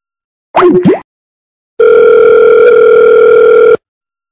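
A short burst with sliding pitch about half a second in, then a steady telephone line tone, like a dial tone, held for about two seconds before it cuts off.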